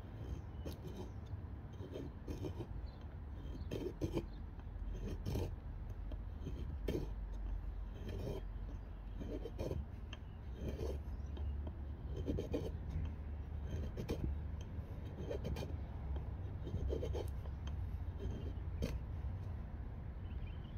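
Tracker knife blade shaving curls off a stick of fatwood for kindling: short scraping strokes, about one a second, at an uneven pace.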